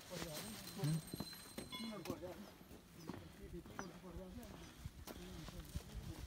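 Indistinct voices of people talking in the background, with scattered light clicks and knocks.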